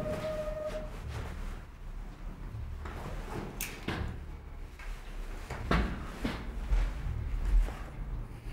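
Clothing rustling with a few light knocks and taps as a man is patted down by hand, over a low steady rumble.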